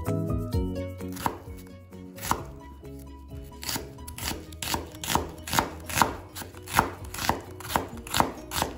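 Kitchen knife chopping on a wooden cutting board: a few scattered strokes through minced garlic, then from about halfway a red onion sliced in steady strokes about two a second.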